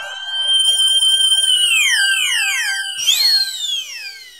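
Electronic sound effect: steady high synthesized tones that slide down in pitch one after another, with a warbling tone in the first second and a bright rising sweep about three seconds in.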